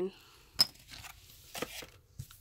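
Quiet handling of a Pokémon promo coin and blister packaging, with a sharp click about half a second in and a lighter one about a second later as the coin is set down on the table.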